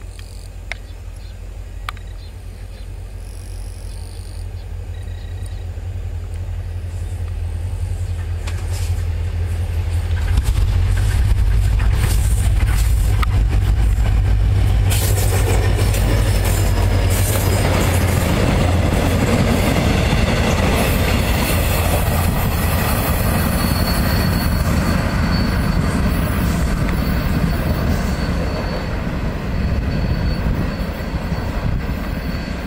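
Diesel locomotive hauling a two-car passenger train, its deep engine rumble growing louder as it approaches. It passes close by about halfway through, followed by the rushing clatter of the coaches' wheels on the rails, with a thin steady high whine in the later part.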